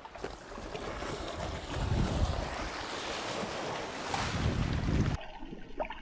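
Wind buffeting the microphone over the wash of the sea at the shoreline, with heavy gusts about two and four seconds in. About five seconds in the sound cuts suddenly to the muffled hush of an underwater camera, with small clicks and crackles.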